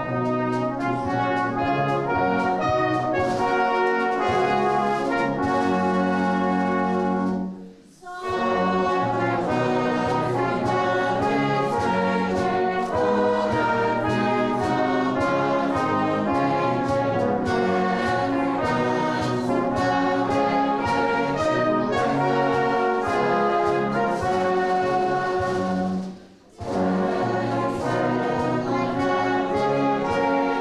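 Salvation Army brass band of cornets, horns, trombones and tubas playing a hymn tune in full harmony, stopping briefly twice between phrases, about eight seconds in and again near the end.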